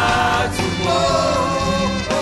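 A woman singing a Twi gospel worship song into a microphone over instrumental accompaniment, holding long notes with vibrato.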